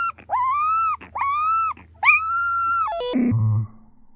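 Husky puppy howling: a run of short, high, clear howls about one a second, each rising and falling, the last one longest, ending about three seconds in.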